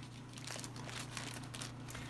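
Sheets of paper and sticker sheets rustling faintly as they are handled and shuffled into a plastic drawer.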